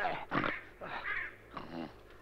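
A cartoon ground squirrel character's voice: about four short, cough-like vocal noises in quick succession, without words.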